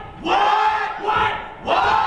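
A man shouting loudly in three short bursts, the words not made out.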